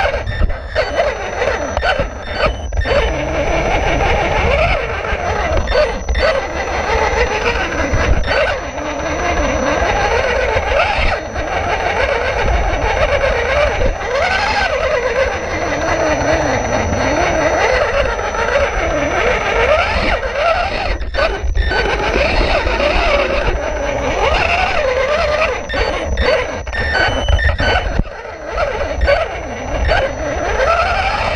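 A 1/18-scale Losi Mini Rock Crawler's electric motor and drivetrain whining, the pitch rising and falling with the throttle as it crawls, with scattered knocks from the tyres and chassis on rock.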